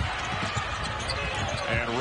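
A basketball bouncing on a hardwood court with repeated short knocks, over steady arena background noise, as players scramble for a loose ball.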